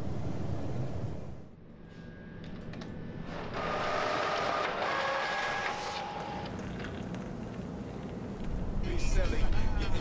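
An office printer runs for a couple of seconds in the middle with a steady mechanical whine as it feeds a sheet. Near the end, a car's engine and road rumble are heard from inside the cabin.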